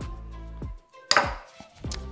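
Background music with a steady beat; about a second in, a short, loud clatter of a metal spoon being set down into a glass bowl of melted white chocolate.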